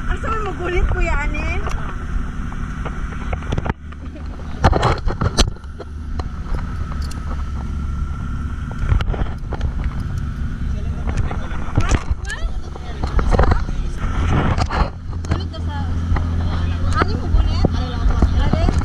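Speedboat engine running steadily, its low drone continuous under wind and water noise, with voices heard at times over it and a few loud knocks about five seconds in.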